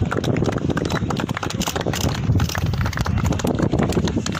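A group of people clapping their hands, many overlapping claps throughout.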